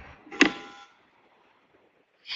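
A single short click about half a second in, then near silence on the call audio.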